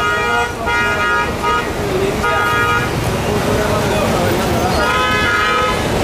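Motorcycle horns honking in slow, crowded traffic: four separate toots, the last about a second long, over the steady noise of a busy street with people talking.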